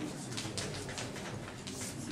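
Chalk writing on a blackboard: a run of short scratching strokes as an equation and axes are drawn.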